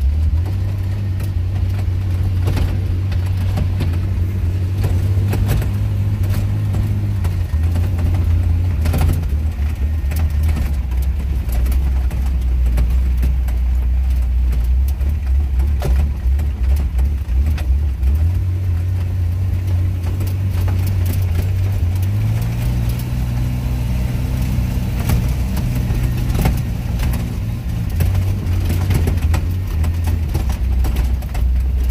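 A vehicle's engine running hard, heard from inside the cabin while lapping a dirt track, its low note dropping about seven seconds in and climbing again later as it speeds up. Scattered sharp ticks and knocks sound over the engine throughout.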